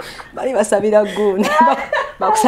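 Two women laughing hard together, starting about half a second in.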